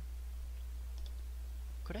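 Steady low electrical hum on the recording, with a few faint clicks about half a second and a second in.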